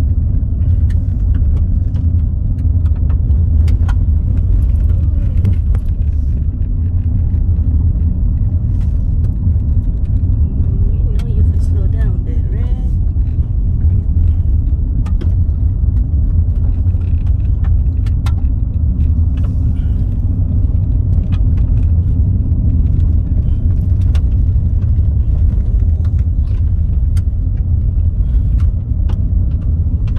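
Car driving on an unpaved dirt road, heard from inside the cabin: a steady low rumble of tyres and road noise, with many scattered small clicks and ticks.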